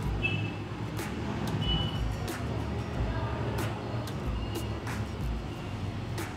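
Background music with a low steady hum under it and scattered sharp clicks.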